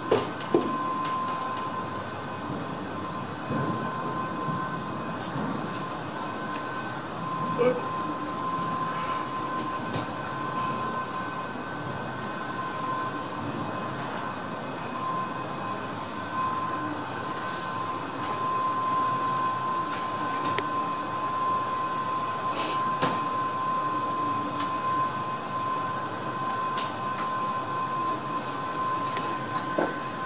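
Inside the Perce-Neige funicular car as it stands at its station at the end of the descent: a steady tone with fainter higher tones above it over a low rumble, with scattered clicks and knocks.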